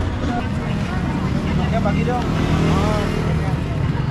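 Steady low rumble of traffic on a busy city street, with people talking in Indonesian over it.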